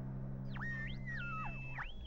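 Cartoon sound effect of a handheld listening gadget tuning in: a string of electronic whistling tones that glide down, step between pitches and hold, over a low steady musical hum that stops just before the end.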